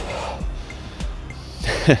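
A man breathing out audibly, then starting to laugh near the end, over faint background music.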